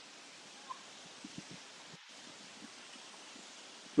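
Faint, steady outdoor background hiss with a few soft taps scattered through it.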